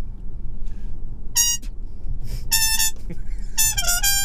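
Trumpet playing three short, high notes with pauses between them, the last bending downward in pitch. Under them runs the steady low rumble of a car cabin on the move.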